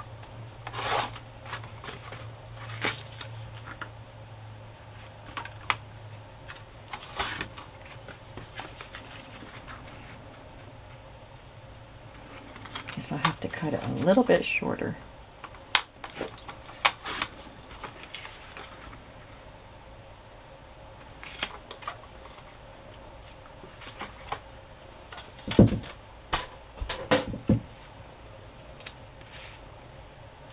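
Hands working cardstock on a sliding paper trimmer: scattered clicks, taps and paper rustles, with a longer scraping stretch about halfway through and a cluster of sharp taps near the end.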